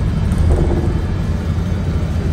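Steady low rumble of a bus driving along a highway, heard from inside the cabin: engine and road noise.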